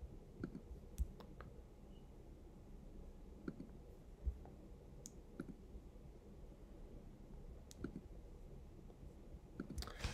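Faint, scattered clicks from operating a computer's pointer while working through save dialogs and right-click menus, about ten over the stretch at irregular intervals.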